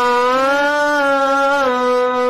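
Harmonium held on a sustained note with a singing voice, a steady reedy tone rich in overtones; the pitch eases up about half a second in and steps back down near the end.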